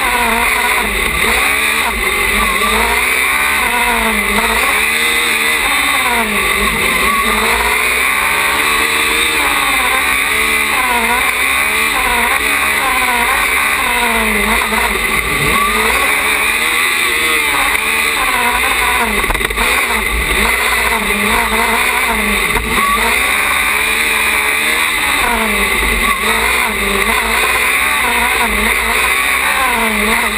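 Small open-wheel single-seat race car's engine heard from on board, its pitch rising and falling over and over as it accelerates and lifts off between the cones.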